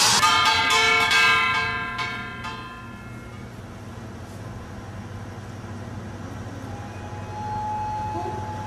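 Live stage music ends on a last loud strike, and its final chord rings on and fades away over about three seconds. A low steady hum follows, and near the end a single held high note comes in.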